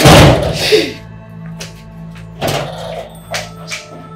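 A loud bang, like a door being shut hard, dying away over most of a second. A softer knock follows about two and a half seconds in, then two light clicks near the end, all over steady background music.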